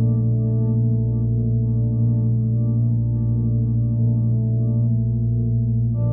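Ambient electronic drone music: several low tones held steady and unchanging, with no beat or melody.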